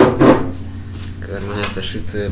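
A loud bump and clatter as the camera is grabbed and swung around at the start, over a steady low hum, then a person's voice in the last second.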